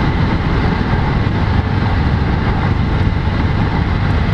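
Steady road and engine noise of a car being driven, heard from inside the cabin: a continuous deep rumble with tyre hiss above it.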